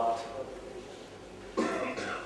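A man's voice trails off at the end of a line, then after a pause he gives a short cough at the microphone, about one and a half seconds in.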